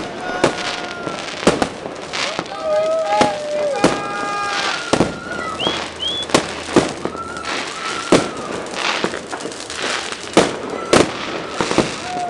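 Fireworks and firecrackers going off across a town: irregular sharp bangs, about one a second, over a steady haze of more distant popping, with two short rising whistles about halfway through.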